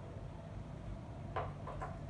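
Glass and porcelain teaware handled on a table: three light clinks in quick succession about a second and a half in, over a low steady background hum.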